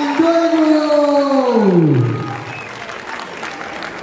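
A man's voice drawing out a long announcing call, held steady and then sliding down in pitch to end about two seconds in, followed by audience applause.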